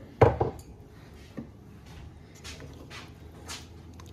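Kitchenware handled at an enamelware pot of simmering beans: one sharp knock just after the start, a small click about a second later, then a few soft light strokes as a spoon goes into the pot.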